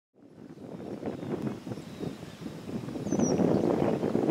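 Wind buffeting the camera microphone, fading in from silence and growing louder, with a single brief high chirp about three seconds in.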